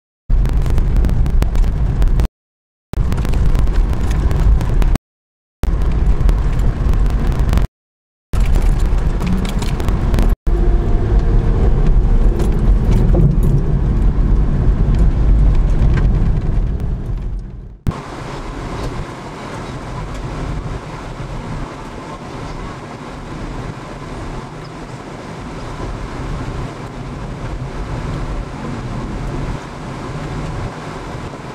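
Vehicle driving a dirt road, heard from inside the cab: loud rumble of tyres and engine with crackle from the road surface, broken several times by short dropouts. About eighteen seconds in it cuts to quieter, steady road and wind noise.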